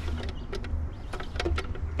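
A few light plastic clicks and knocks as a Twistshake formula dispenser container is handled.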